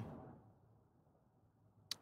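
Near silence in a pause between spoken sentences, broken by one brief faint click shortly before the end.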